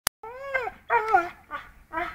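A pit bull whining in about four short, high cries that bend up and down in pitch, its jaws clamped on a hanging tug rope. A sharp click right at the very start.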